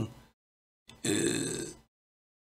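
A man's short throaty grunt, about a second long, starting with a small mouth click.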